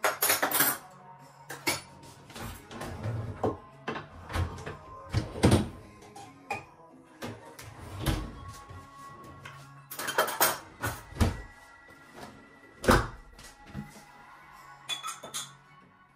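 Dishes and cutlery being unloaded from a dishwasher: irregular clinks and knocks of metal cutlery, crockery and glass, with drawers and cupboard doors opening and closing, over quiet background music.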